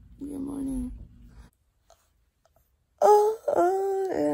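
A girl's voice making drawn-out, wordless wailing sounds: a short moan in the first second, then, after a cut to silence, a loud held wail in the last second.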